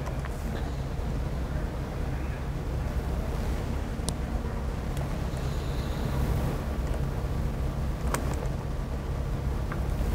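Steady low hum of a lecture room, with a few faint scattered clicks.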